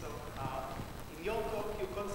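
Faint speech from a voice away from the microphone, an audience member beginning a question.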